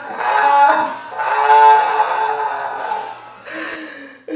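Strummed guitar chords as a short music cue: a first chord at the start, then a second, louder chord about a second in that rings out and fades.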